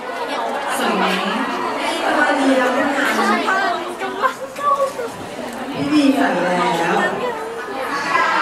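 Speech only: women talking over microphones, with crowd chatter behind.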